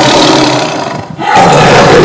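Big cat roaring in long, loud calls, one ending about a second in and the next starting just after.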